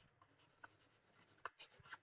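Near silence with a few faint, short taps of a stylus writing on a tablet screen.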